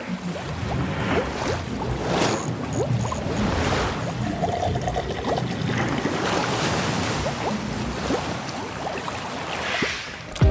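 Sound-designed intro sting for an animated logo: noisy whooshes and water-like splashes over a low rumble, with no clear melody.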